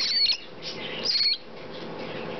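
Very young Triton cockatoo chicks giving high-pitched begging calls while gaping for food: two short calls, one at the start and another about a second in.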